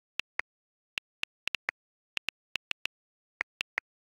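iPhone on-screen keyboard key clicks: about fifteen quick taps at an uneven typing pace, a few of them a little lower in pitch than the rest.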